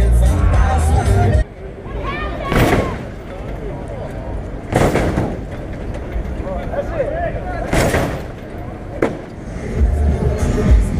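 Live sound of a hydraulic lowrider hop contest: crowd voices, and several loud bangs a few seconds apart as a hopping car slams down. Music with a heavy bass plays at first and cuts off abruptly after about a second and a half.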